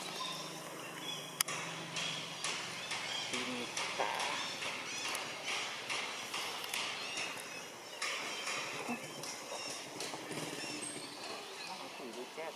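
Outdoor ambience with many irregular soft clicks and ticks and faint voices in the background.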